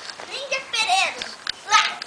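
Young children's voices: high excited calls and squeals, the loudest a shrill cry near the end, with a couple of short clicks in between.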